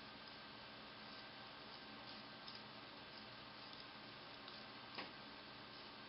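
Near silence over a steady low hiss, with a few faint, sparse clicks of bamboo double-pointed knitting needles touching as stitches are knitted; the clearest click comes about five seconds in.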